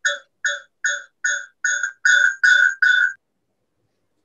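A bell-like ringing tone struck over and over, about two and a half times a second. The strokes grow longer and louder near the end, then stop about three seconds in.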